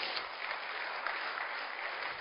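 Congregation applauding steadily in a church hall.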